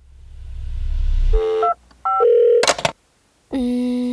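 A low rumble that swells up over the first second and a half, then a run of short electronic beeps that step between different pitches, a sharp hit, and a single held tone near the end.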